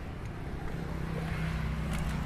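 Street traffic: a steady low hum of vehicles running nearby, with a faint engine tone coming in under a second in.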